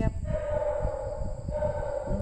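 A person's voice holding one steady hum for more than a second after a spoken word.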